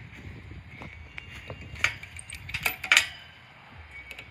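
Metal chains and hooks of a swing-set trapeze bar clinking in a few sharp clicks as a child's weight swings onto it, the clicks bunched in the second half.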